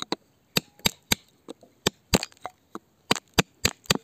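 A pointed digging tool striking and chipping at wet, crumbly rock around an embedded stone: a series of about ten sharp knocks at uneven intervals.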